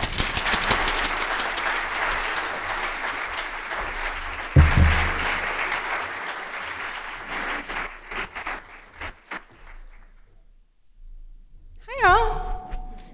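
Audience applauding, dense clapping that thins out and dies away after about nine seconds, with one low thump about four and a half seconds in.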